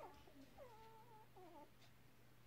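Very young puppies whimpering faintly: a few short squeaky calls and one longer, wavering one within the first second and a half or so.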